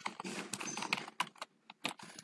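Typing on a computer keyboard: a quick run of key clicks, a short pause about a second and a half in, then one last sharp click near the end.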